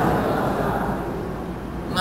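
A man speaking into a handheld microphone over a steady low rumble of background noise.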